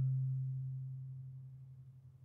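A low marimba note, struck just before, ringing on as one steady tone and fading away evenly until it is almost gone near the end.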